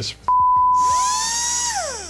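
A steady test-tone beep, the line-up tone that goes with colour bars, followed by an electronic whine that slides down in pitch, winding down near the end like a power-down sound effect.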